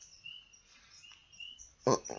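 A few faint, short high-pitched bird chirps spaced across a quiet pause.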